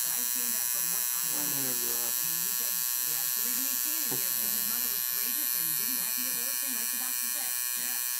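Tattoo machine buzzing steadily as its needle works ink into the skin of the chest.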